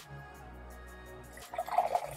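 A non-carbonated drink poured from a can into a glass, the liquid splashing into the glass from about one and a half seconds in.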